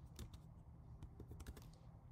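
Faint typing on a computer keyboard: a quick run of keystrokes that stops shortly before the end.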